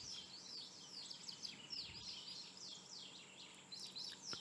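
Faint birdsong in the background: many short, quick falling chirps from several birds, overlapping throughout.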